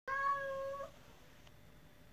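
A domestic cat meows once: a single drawn-out call of under a second that turns up in pitch at its end.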